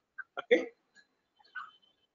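A single short spoken "okay" about half a second in, then quiet with a few faint brief sounds.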